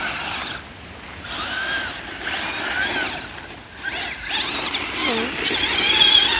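Traxxas Slash RC truck's electric motor whining in several throttle bursts, the pitch rising and falling with each one, loudest near the end as the truck passes close.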